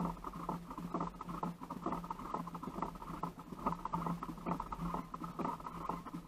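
Fishing reel being cranked: a fast, continuous run of small clicks, with a low hum that comes and goes.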